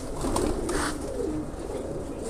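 Domestic pigeons cooing, a quiet run of low coos.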